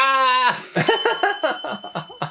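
A man's long, loud scream, breaking into bursts of laughter about a second in. A faint, thin, high ringing tone sounds over the laughter.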